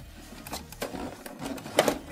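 Hard plastic toy parts and packaging clicking and knocking as they are handled, a few separate clacks with the sharpest ones near the end.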